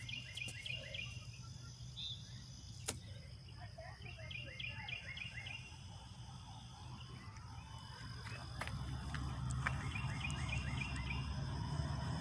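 A songbird singing a short run of quick repeated notes three times, roughly four to five seconds apart, over low outdoor background noise that grows louder in the second half.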